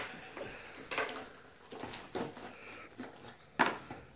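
A few light knocks and clatters of toys being handled, about four short strikes spread roughly a second apart.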